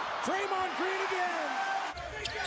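A man's voice speaking over the steady background noise of a basketball arena crowd.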